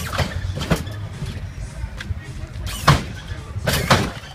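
Lowrider's hydraulic suspension being worked: four loud, sharp bangs of the car's suspension over a steady low rumble, the third with a short hiss.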